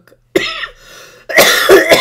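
A person coughing: a short cough about a third of a second in, then a louder, longer run of coughs in the second half.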